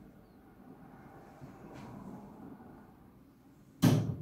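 A single sharp knock near the end as the door of a small wall-mounted tabernacle is shut, over faint low background noise.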